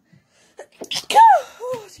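A woman sneezing once about a second in: a sharp hiss followed by a loud voiced 'choo' that rises and falls in pitch, trailing off in a short softer vocal sound.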